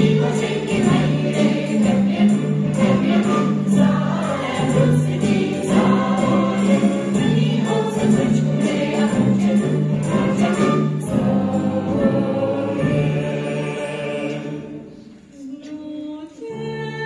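Musical-theatre number: a large chorus singing together over accompaniment with a steady beat. The music fades out near the end.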